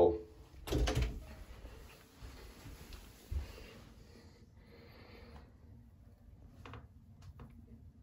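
Soft knocks and rubbing as a soap-slicked rubber expansion anchor for a toilet-seat bolt is worked into the bolt hole of a porcelain toilet bowl. A louder bump comes about a second in and a sharp knock a little after three seconds, then only faint clicks near the end.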